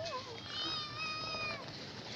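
Domestic cat meowing: one drawn-out, fairly level meow beginning about half a second in and lasting about a second, dropping slightly in pitch as it ends.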